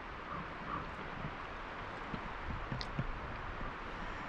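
Quiet woodland background with faint rustling and a few soft ticks as a bunch of freshly dug ramp leaves is handled.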